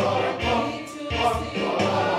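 Samoan church choir of adults and children singing together in harmony, over a steady low pulse that recurs about every two-thirds of a second.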